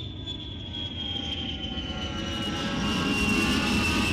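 Jet airliner sound effect: engines running with a rumble that grows steadily louder and a high whine that slowly falls in pitch, as the plane takes off or passes overhead.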